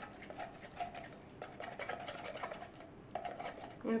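Wooden stir stick clicking and scraping against the sides of a plastic pouring jug as melted soap base is stirred: faint, irregular small ticks.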